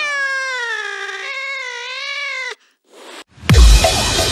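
A long, drawn-out cat-like yowl that falls in pitch and then wavers for about two and a half seconds before cutting off sharply. After a brief gap, music comes back in with a heavy, deep bass hit.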